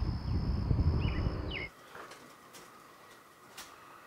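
Night-time outdoor ambience: a low rumble, a steady high-pitched buzz and a couple of short bird chirps, cutting off suddenly a little under halfway through. Quiet indoor room tone follows, with a faint click.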